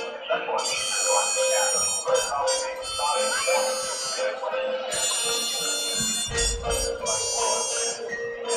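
High school marching band playing on the field: sustained brass and woodwind chords over a steady held note, the chords changing in blocks every second or so, with a low boom a little past six seconds in.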